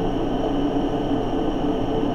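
Steady background hum with hiss, a few constant tones over an even noise and nothing else happening.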